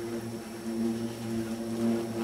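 A marching band holding a soft, low sustained chord, several steady notes at once, swelling a little toward the end.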